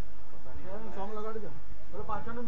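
A man's voice through the stage microphone and loudspeakers: one short phrase about halfway through, its pitch falling at the end, over a steady low hum.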